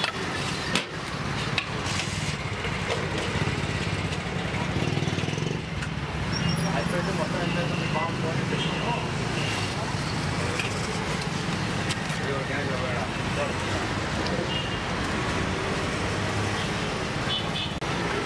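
Roadside street-stall ambience: a steady rumble of passing traffic and indistinct voices, with a few sharp clicks and scrapes of a steel ladle against an aluminium cooking pot and foil container as rice is served.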